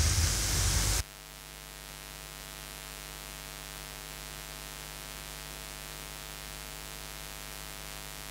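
A steady electrical hum with a faint hiss. The louder room noise cuts off abruptly about a second in, leaving only the hum.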